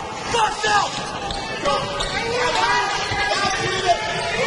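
A basketball being dribbled on a hardwood court in a large gym, with voices from players and spectators mixed in.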